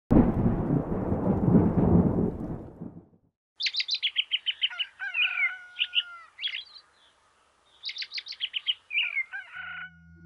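A deep rumble fades out over the first three seconds. After a short silence, birds sing in two bouts: fast trills of high repeated notes mixed with whistled calls.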